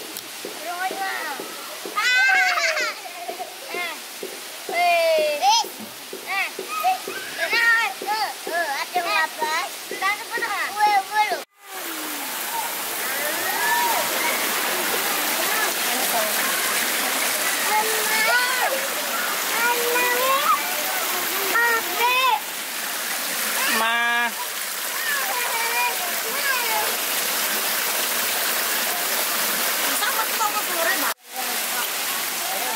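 Children's voices at play for the first ten seconds or so; then, after a sudden cut, water pouring steadily from a spout into a pool, a constant rushing hiss with occasional voices over it.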